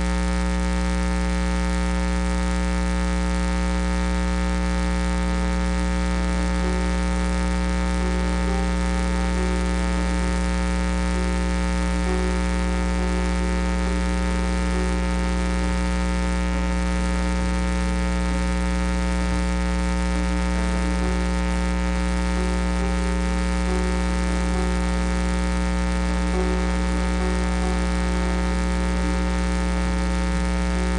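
Steady electrical mains hum and buzz with many overtones, unchanging in level throughout.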